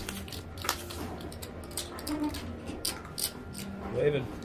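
Playing cards being dealt and flipped onto a blackjack table's felt, heard as a handful of short, sharp clicks and swishes at irregular intervals over a faint steady room hum.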